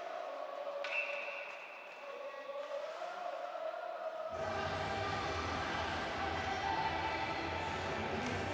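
Ice rink arena sound with a short high whistle blast about a second in as play stops. About four seconds in, arena PA music with heavy bass starts abruptly and is the loudest sound.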